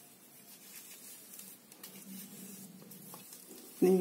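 Faint rubbing of a cotton pad dabbed against facial skin over quiet room tone; a woman's voice begins right at the end.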